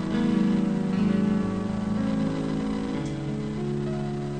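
Instrumental introduction of a recorded nueva trova ballad: guitar and held chords that change every second or so, before the singer comes in.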